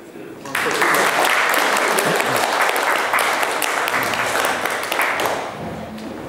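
Audience applauding a speaker at the end of his talk: a dense round of clapping that starts abruptly about half a second in and dies down near the end.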